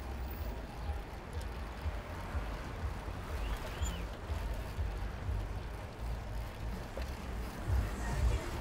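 Wind buffeting the microphone of a camera moving with a bicycle through city traffic, a gusty low rumble over the faint noise of passing cars.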